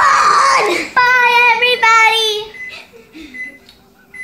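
A young child's voice: a squeal that swoops up and down in the first second, then two long held notes, the second sliding slightly down at its end.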